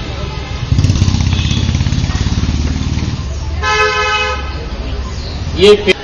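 Street traffic: a vehicle engine runs close by with a pulsing rumble from about a second in, then a vehicle horn honks once, for under a second, about halfway through.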